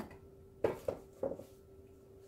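A stretched canvas being set down on a table: a click, then three short knocks of its wooden frame against the work surface within about a second.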